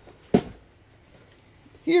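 A single sharp tap about a third of a second in, like a small object knocked against a hard surface, followed by quiet room tone until a voice starts near the end.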